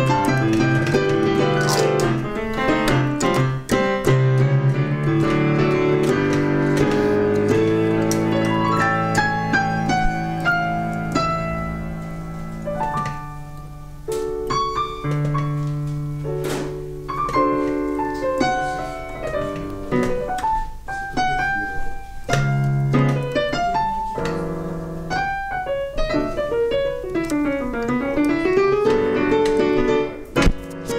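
Solo piano piece played on a digital piano: held bass notes under chords and a flowing melody. It softens for a moment about halfway through, and near the end a quick run sweeps down the keyboard and back up.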